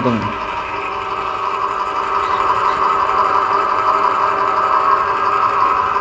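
Electric stainless-steel home oil press running steadily while it presses almonds into oil: a continuous motor hum with several steady tones.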